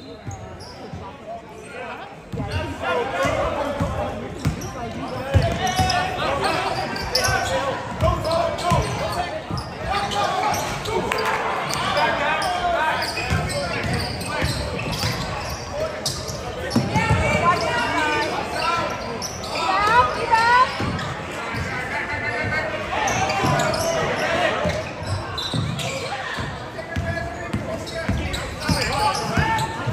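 A basketball bouncing on a hardwood gym floor amid continuous spectator chatter and calls, echoing in a large gymnasium. Short squeaks come in during the second half.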